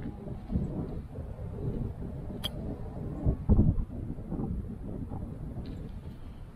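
A single sharp click about two and a half seconds in: a golf club striking a Nike RZN MS Tour ball on a short chip, a strike the golfer judges not completely clean. A low, uneven rumble runs underneath, loudest just after the strike.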